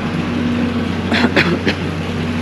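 Water pouring steadily from the wall spouts of a backyard water feature into its tiled basin, splashing without a break, with a low steady hum beneath.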